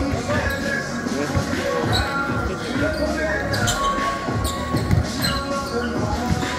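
A basketball bouncing on an indoor gym floor: a series of short, irregular thuds during play.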